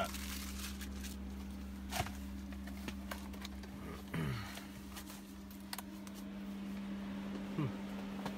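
A steady low hum runs throughout, with scattered light clicks and handling sounds of tool packaging and a few brief voice sounds.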